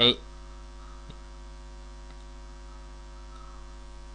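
Steady electrical mains hum in the recording, with one faint click about a second in.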